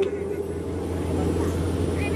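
Steady low hum with an even background noise and no speech.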